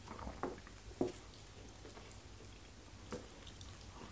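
Faint wet eating sounds of fufu and vegetable soup eaten by hand: fingers squishing the soft dough in the soup, and chewing. A few short, soft smacks stand out, the clearest about a second in.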